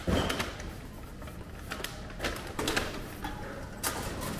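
Aluminium drink cans being fed into a reverse vending machine: a knock as a can goes into the intake, then a series of sharp clicks and clatters from the machine's mechanism as it takes the can in and counts it.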